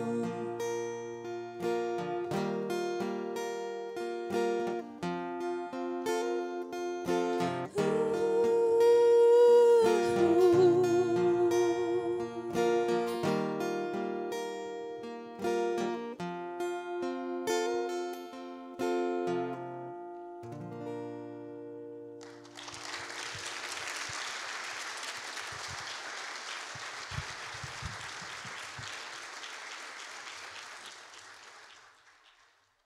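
Acoustic guitar and a woman's singing voice closing out a song: she holds a final note that wavers with vibrato about ten seconds in, then the guitar plays on alone and stops. About twenty-two seconds in, the audience applauds.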